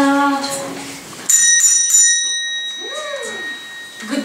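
A small bell rung twice in quick succession about a second in, a bright ringing that fades out over about two seconds: a visitor ringing at the door to be let in. Children's singing ends just before it.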